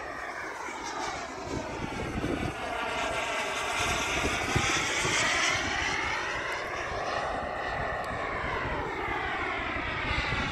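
Turbine engine of a radio-controlled BAE Hawk model jet flying overhead: a multi-pitched whine that swoops up and down in pitch as the jet passes and turns, loudest around the middle.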